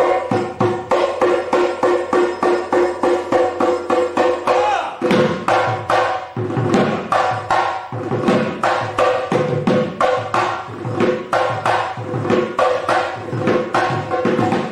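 A set of Assamese dhol barrel drums played solo in fast, even strokes. For the first five seconds the strokes carry a steady ringing pitch; then the playing shifts to deeper, lower strokes.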